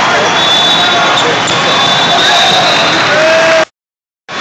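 Busy multi-court volleyball hall: a constant din of overlapping voices and shouts, with short squeaks from sneakers on the court surface, during a rally. The sound cuts out abruptly to silence shortly before the end.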